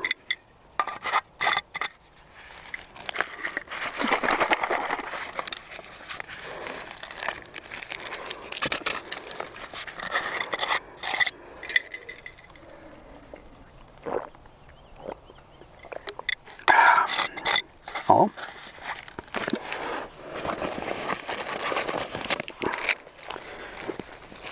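Plastic ration packaging crinkling and being handled as rubbish goes into a bag, with scattered sharp clicks and scrapes, thickest in the first couple of seconds and again about two-thirds of the way through.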